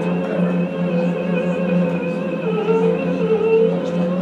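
Archival film soundtrack of a cantor singing long, slightly wavering held notes over a steady low accompaniment, played through a hall's loudspeakers.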